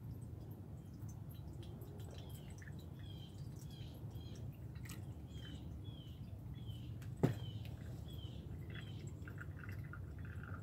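Faint trickling and dripping of green acid-peroxide solution poured slowly from a plastic pitcher into a coffee-filter-lined funnel. A bird chirps repeatedly in the background with short falling calls, and there is a single sharp knock about seven seconds in.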